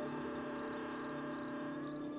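A cricket chirping in short, evenly spaced chirps, about two and a half a second, over a sustained, droning music score.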